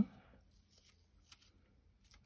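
Faint handling sounds of fingertips pressing gold gilding flakes onto a glued card die-cut, with one small tick a little over a second in.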